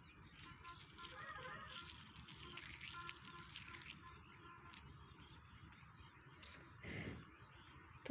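Faint crackling and rustling of dry mustard pods crushed and rubbed between the fingers to free the seeds. It dies away about halfway through.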